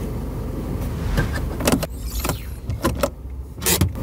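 Hyundai Getz hatchback's engine idling steadily, with several short clicks and knocks over it.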